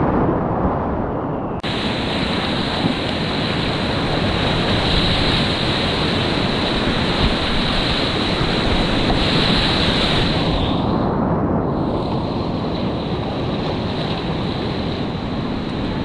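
Loud, continuous rushing of whitewater rapids around a kayak, recorded close to the water on an action camera. The rush turns suddenly brighter and hissier about two seconds in and duller again about eleven seconds in.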